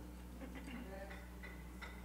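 Quiet pause: a steady low electrical hum with a few faint, scattered ticks.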